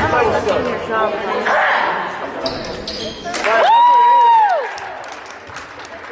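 Basketball game in a gymnasium: spectators talking and a ball bouncing on the hardwood, then a loud, held high-pitched call lasting about a second, about halfway through.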